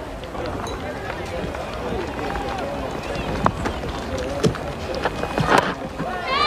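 Cricket crowd noise from a stadium broadcast: a steady murmur of spectators' voices, with a few sharp knocks in the second half.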